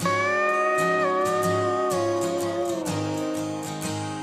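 Instrumental intro of a country song: a steel guitar comes in with a held chord that steps down and slides lower, fading about three seconds in, over strummed acoustic guitar and a steady low beat.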